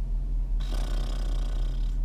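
Steady low rumble of a car cabin. From about half a second in, a long, even, breathy hiss that sounds like a slow exhale.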